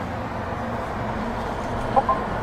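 Steady low hum and rumble of a car idling, heard from inside the cabin with the driver's window open.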